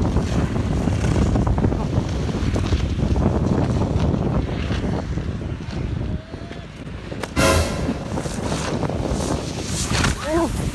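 Heavy wind buffeting a phone's microphone, a dense rumbling roar that dips briefly past the middle, with a short, louder, harsher burst about seven seconds in.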